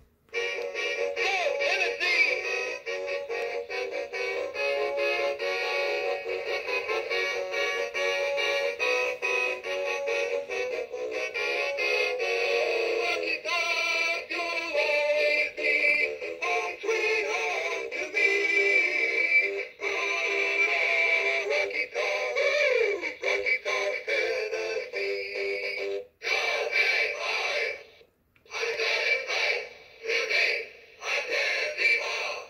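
A Gemmy animated mascot bobblehead playing a song with singing through its small built-in speaker, thin and tinny with no bass. Near the end the song cuts off and restarts twice as the button on its base is pressed again.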